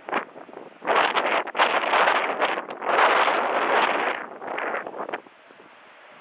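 Wind buffeting the camera microphone in strong gusts. It rises sharply about a second in and dies down about five seconds in.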